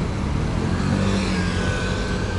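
Steady urban traffic rumble with a vehicle engine humming through it; a faint high whine joins in the second half.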